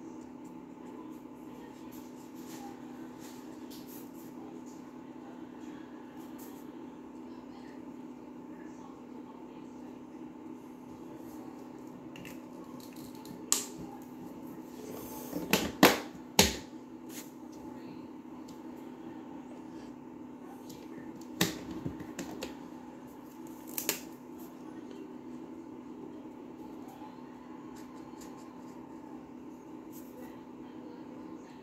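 Steady low room hum with a few sharp plastic clicks. The loudest cluster comes about halfway through, as a mini marker's cap is pulled off and snapped back on while markers are swapped.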